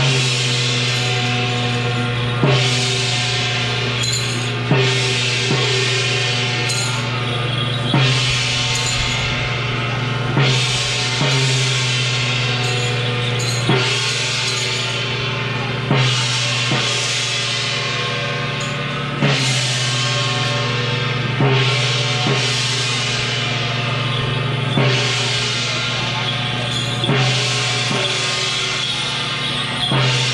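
Temple procession percussion: a large drum and a hand-held gong struck together in a slow, uneven beat, roughly every two to three seconds. The metal's ring hangs on between strokes.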